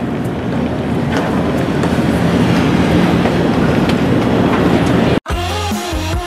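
Steady engine rumble with a low hum and a wash of noise, which cuts off abruptly about five seconds in. Electronic music with a beat starts right after the cut.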